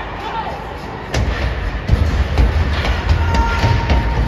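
Ice hockey play: sharp knocks and heavy thuds of sticks, puck and players hitting the boards and glass, starting suddenly about a second in and repeating through the rest.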